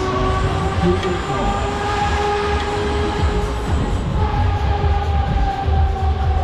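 Wind rushing over the microphone of a rider high up on a funfair ride, with several steady, slightly wavering tones held above it.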